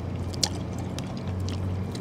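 Quiet eating sounds: chicken being pulled apart by hand and chewed, with a few soft clicks, over a steady low background hum.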